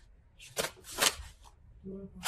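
Two short, soft clicks about half a second apart, a little after the start.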